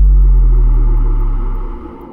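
Deep cinematic boom of a logo-reveal sound effect, very loud, hitting just at the start and fading out over about a second and a half, with a low drone carrying on beneath it.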